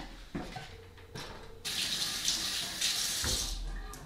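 Two short knocks as a slow cooker is set down on the countertop, then a kitchen faucet runs into the sink for about two seconds before being shut off.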